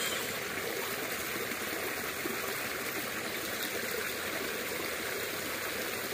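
Small muddy creek running steadily past a line of sandbags, an even, continuous water rush with no breaks.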